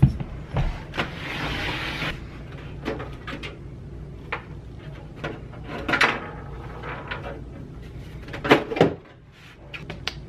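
A desktop computer tower being handled and its side panel taken off: a string of knocks and clicks, with a scraping slide about a second in, over a low steady hum.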